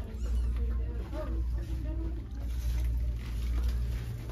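Indistinct voice in the background, rising and falling for the first couple of seconds, over a steady low hum of store ambience.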